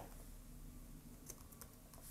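Faint typing on a computer keyboard: a few scattered keystrokes, most of them in the second half.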